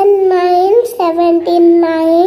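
A child's voice chanting a number aloud in a drawn-out sing-song, a few long held syllables at a fairly steady pitch.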